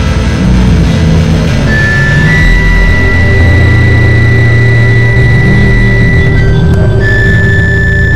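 Experimental noise music: a loud, dense low drone with a thin, steady high tone entering about two seconds in, breaking off near the end and returning slightly lower.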